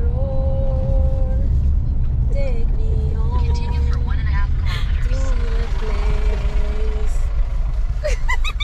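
Steady low rumble of a car being driven, heard from inside the cabin. Over it come a few long held notes that step up and down in pitch, like a tune.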